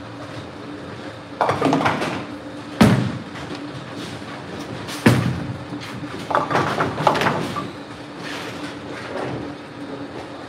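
Bowling alley clatter: bowling balls hitting the lane and pins crashing, in several separate bursts. The sharpest knocks come about three and five seconds in.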